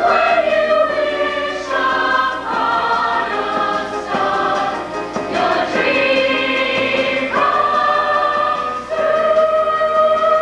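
Mixed-voice show choir singing long held chords, the harmony shifting to a new chord every second or two.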